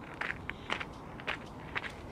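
Footsteps of a person in trainers walking on a stony gravel path, a series of separate crunching steps coming toward the microphone.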